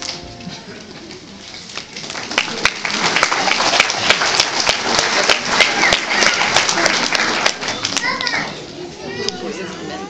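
Many hands clapping, irregular and dense, starting about two seconds in and easing off near the end, with adult and child voices chattering underneath.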